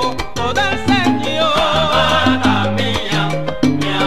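Salsa music from a band: a moving bass line under pitched melody parts, with regular percussion strikes.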